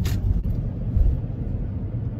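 Car driving, heard from inside the cabin: a steady low rumble of engine and road noise, with a brief hiss at the start and a low bump about a second in.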